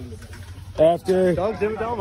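A man's voice: low background at first, then from just under a second in a drawn-out vocal sound that bends in pitch, running straight into speech.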